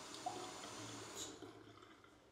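Water running from a gooseneck bathroom faucet into an undermounted sink, faint and steady, then shut off about a second and a half in.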